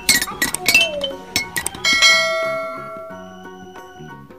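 Metal-barred toy xylophone (glockenspiel) struck with mallets: a quick run of bright notes, then one note about halfway through that is left to ring and fade.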